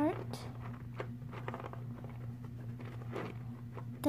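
A few light clicks and taps of small plastic toy pieces being handled as a toy loaf of bread is fitted underneath a miniature toy shopping cart, over a steady low hum.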